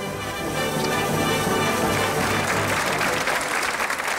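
Studio audience applauding over music, the applause swelling through the second half.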